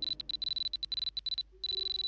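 A high-pitched electronic tone stutters on and off in rapid, irregular pulses. About a second and a half in it breaks off briefly, then returns for a moment over a lower steady tone.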